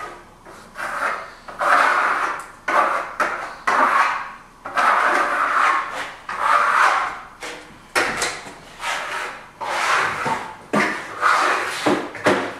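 A plastering trowel scrapes iridescent metallic Venetian plaster across a wall in repeated strokes, about one a second. Each stroke swells and then breaks off as the blade is lifted.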